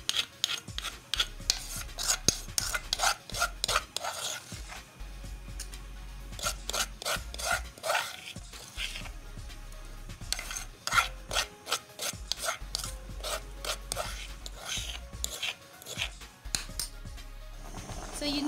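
Spoon scraping and rubbing inside an earthenware mortar: pounded yellow pepper being worked and scraped out onto a plate, in many short, irregular rasping strokes.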